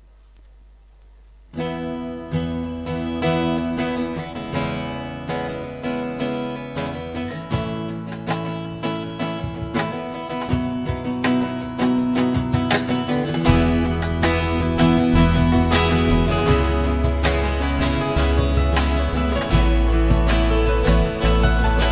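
Worship band beginning a song: acoustic guitars strumming, starting about a second and a half in after a short quiet moment. Low bass notes join about halfway through and the music grows louder.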